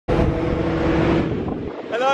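Wind buffeting the camera microphone of a moving bicycle, a heavy rumble with a steady hum through it that drops away suddenly near the end.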